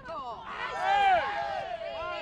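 Several voices shouting and calling over one another on a football pitch, loudest about a second in.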